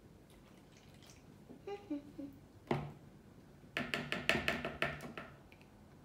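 A toddler crying in short bursts: a few brief whimpers, then a sudden louder cry and a rapid run of sobbing pulses in the second half.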